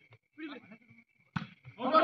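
A volleyball struck by hand once, a sharp smack about a second and a half in. Before it comes a short, wavering, bleat-like call.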